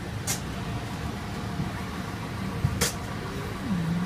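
Steady low drone of machinery at a parked airliner's boarding door, with two short sharp clicks, one about a third of a second in and one near three seconds in.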